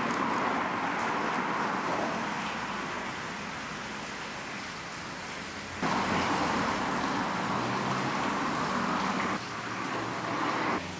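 Audi Q5 SUV idling amid a steady hiss of outdoor noise. The sound jumps louder about six seconds in and drops again near the end.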